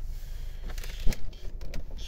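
Low steady hum in a car cabin, with a few small clicks; the sharpest comes just over a second in.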